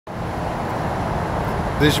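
Steady outdoor background noise with a low rumble, even throughout; a man's voice starts near the end.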